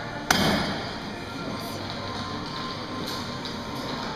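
A single sharp clank from a gym weight machine about a third of a second in, then faint background music and room noise.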